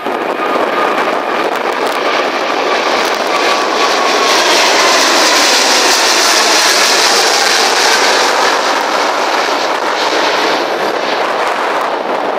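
Boeing 777 twin-engine jet at takeoff power climbing out directly overhead: loud jet noise that builds to its loudest in the middle as the aircraft passes over, then eases slightly as it flies away. A faint falling whine can be heard in the first few seconds.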